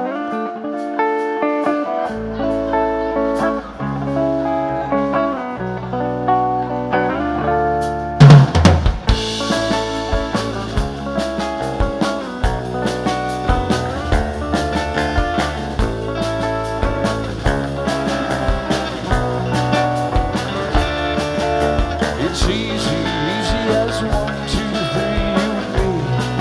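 Live rock band playing an instrumental intro: electric guitar, with a low bass line joining about two seconds in and the full drum kit coming in with a loud hit about eight seconds in.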